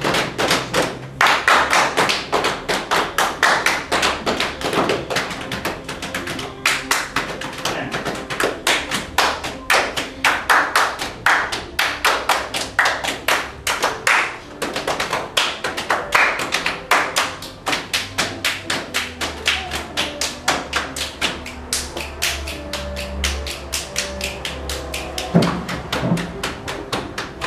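Body percussion by a percussion ensemble: fast, rhythmic slaps on legs and hand claps played together in tight ensemble, several strokes a second.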